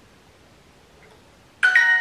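Duolingo app's two-note chime, a lower tone and then a quick higher one, ringing out from the device's speaker about a second and a half in after a quiet stretch. It is typical of the app's signal for a correct answer.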